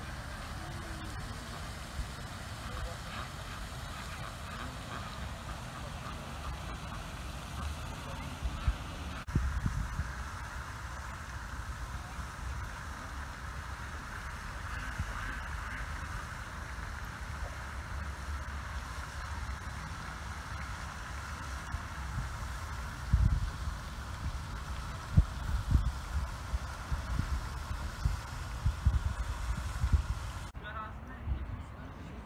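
Park ambience beside a duck pond: a steady outdoor background with distant voices, and occasional low buffeting on the microphone, strongest in the last several seconds.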